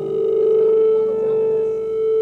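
A steady electronic tone with a stack of overtones, held at one unchanging pitch.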